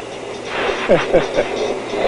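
Steady cockpit noise of an Embraer AMX jet in flight, heard through the intercom as an even hum and rush. About a second in there are a few short vocal sounds falling in pitch.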